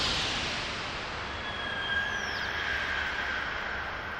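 A steady rushing noise from a title-sequence sound effect, with faint high whistling tones running through it and a brief falling whistle about two seconds in.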